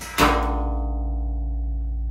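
Background music: a strummed acoustic guitar chord about a quarter second in, ringing out over a steady low hum.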